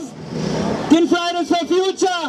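A woman speaking German into a handheld microphone over a PA. She pauses for about the first second, which is filled by a brief rushing noise that swells and fades, then her voice resumes.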